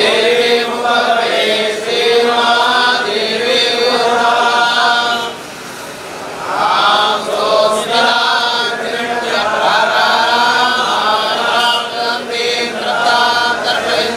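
A group of Hindu priests chanting mantras together in long, steady phrases, with a short break about five and a half seconds in before the chant resumes.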